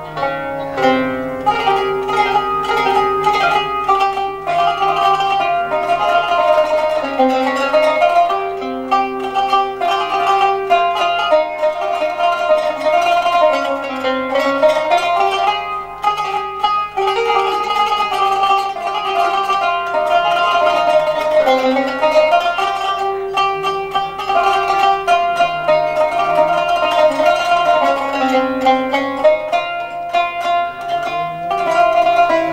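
Qanun played solo: a continuous melody of quick plucked-string notes and running phrases.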